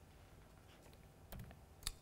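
Near silence with two faint clicks near the end, from a laptop being operated.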